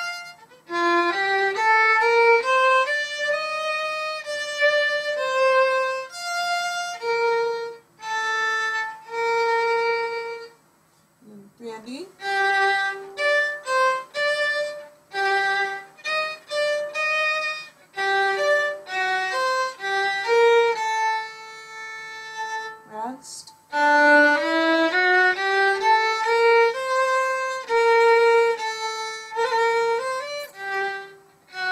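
Solo violin played with the bow, a slow minuet passage of sustained notes one after another, with brief pauses about eleven and twenty-three seconds in.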